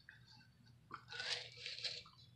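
Crunchy rattling of a plastic bottle of pellet-type radiator stop-leak being emptied over a plastic funnel, in two short spells: one about a second in and one near the end.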